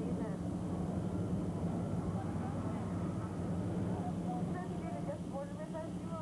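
Open-sided passenger tram running at a steady pace, its engine a constant low hum, with passengers' voices chattering over it, more near the end.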